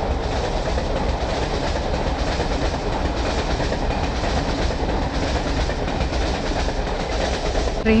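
Passenger train running past, with a steady noise of its wheels on the rails.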